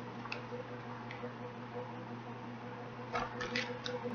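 Faint handling sounds of a paper book: a couple of soft clicks as its pages are flipped, then a quick run of small taps and rustles near the end as books are swapped, over a steady low hum.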